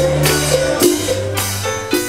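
Live saxocumbia band playing an instrumental passage, with bass and percussion keeping a steady dance beat.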